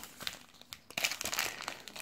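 Plastic trading-card packaging crinkling as it is handled: a few faint clicks at first, then steady crackling from about a second in.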